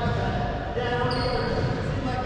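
A racquetball bouncing on the hardwood court floor, with indistinct voices.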